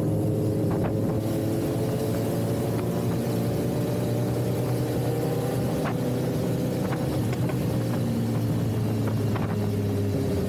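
BMW S1000RR's inline-four engine running at a steady cruising speed, its pitch nearly level, with a few short clicks over it.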